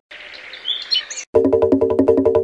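The music breaks off and for just over a second birds chirp over a steady hiss, a brief outdoor ambience. About 1.3 s in, music with a steady beat comes back abruptly.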